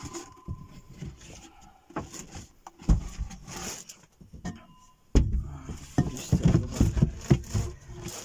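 Muffled rustling and handling noise on a covered phone microphone, with scattered knocks and clacks as things are moved about. It gets busier about five seconds in.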